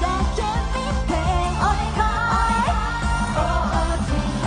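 Live J-pop performance: female idol group members singing a melody into microphones over an upbeat pop backing with a steady beat.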